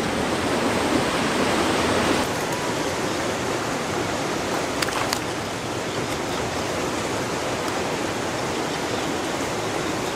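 Steady rush of churning river water below a dam, a little louder in the first two seconds, with a couple of faint clicks about halfway.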